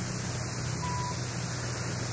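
Steady hiss and low hum of an old soundtrack in a pause of the narration, with one short, faint beep about a second in, the kind of cue tone that advances slides in a slide-tape program.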